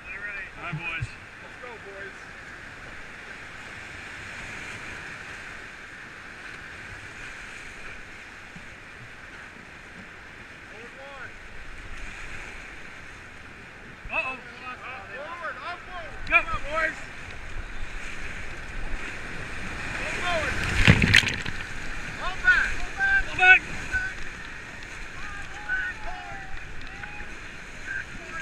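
Whitewater rapids rushing steadily around an inflatable raft. Short shouts and whoops from the rafters come in the second half, and a single sharp, loud thump or splash hits near the microphone about 21 seconds in.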